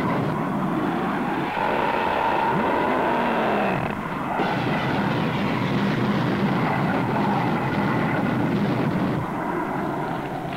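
Jet aircraft noise, a steady loud roar with a tone that falls in pitch about two and a half seconds in, as of a jet passing low overhead; the sound changes briefly about four seconds in and then the roar carries on.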